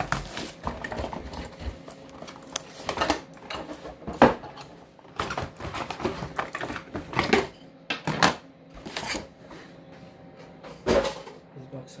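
Unboxing noises from a cardboard box and a plastic-wrapped keyboard being handled: irregular rustles, scrapes and knocks as the packaging is lifted and set down on a desk.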